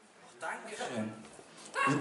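A person's voice: a short, low vocal sound about half a second in, then louder talking that starts near the end.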